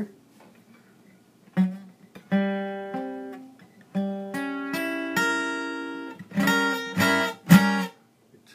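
Acoustic guitar playing a short chord-change lick after a brief pause: single strums that ring out and shift from chord to chord, ending in three sharp strums. The player calls the move some kind of augmented transitional chord.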